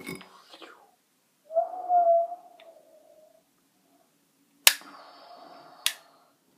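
A brief pitched vocal sound, held for about a second, then two sharp clicks about a second apart from an orange plastic toy pistol, the first the loudest.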